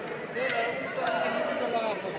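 Three sharp slapping impacts of taekwondo kicks landing on padded body protectors, the second close after the first and the third near the end, over several voices shouting.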